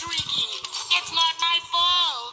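Cartoon soundtrack: music with a high, wavering, voice-like pitched line running through it.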